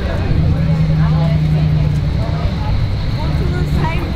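Low, steady rumble of an idling vehicle engine, with people chatting over it.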